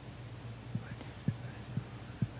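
A steady low hum with three soft, short low thumps about half a second apart, starting near the middle.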